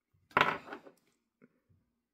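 A steel bolt with a nut on it set down on a wooden desktop: one sharp clack about a third of a second in, a lighter knock just after, and a faint tap near the middle.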